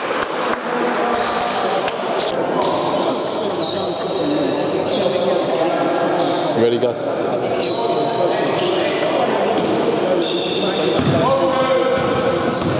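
Echoing sports-hall sound of a basketball game: indistinct players' voices and calls, with a basketball bouncing on the court floor.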